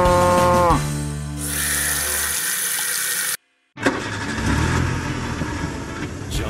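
A cartoon cow mooing: one long, drawn-out moo that drops in pitch and stops under a second in. Steady noise follows, broken by a brief dead silence at about three and a half seconds.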